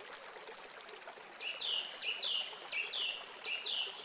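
A small songbird calls four times in quick succession from about a second and a half in. Each call is a short lower note followed by a higher note that falls in pitch. A steady rushing background noise runs underneath.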